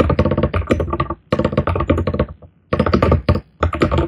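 Fast typing on a computer keyboard: rapid runs of keystrokes in several quick bursts with brief pauses between them.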